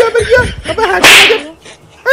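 Short vocal sounds with a wavering pitch, then a loud hissing whoosh about a second in, lasting under half a second.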